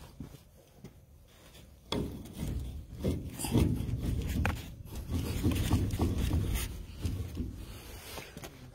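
Rubbing and scraping noises with a few sharp knocks. They are quiet for about the first two seconds, then turn into a continuous rough scraping that eases off near the end.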